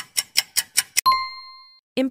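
Quiz countdown timer sound effect: quick ticks, about five a second, ending about a second in with a single bell ding that rings out for under a second, marking time up before the answer.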